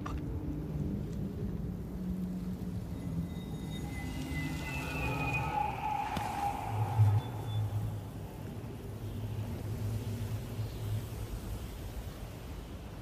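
Quiet, low film score over a rumbling low ambience. Higher sustained tones swell in around the middle and peak briefly, then give way to a steady low held note.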